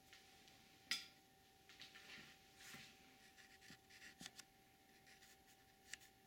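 Near silence indoors, broken by faint scratching and rubbing sounds and a few short clicks, the sharpest about a second in and two more just past the four-second mark.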